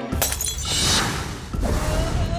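Cartoon sound effect of a ceramic jar smashing on a stone floor: a sharp crash just after the start, then a spray of shattering noise over a low rumble as the jar breaks open.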